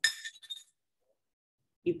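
A metal canning lid clinks against glass with a short ringing tone that fades quickly, followed by a lighter tap about half a second later.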